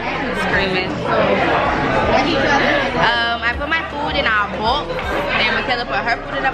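Speech only: people talking over one another in a restaurant, voices and chatter with no clear words.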